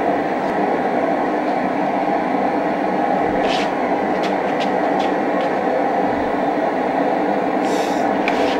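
Blacksmith's forge running with a steady roar as a railroad spike heats in the fire, with a few sharp ticks a little past the middle.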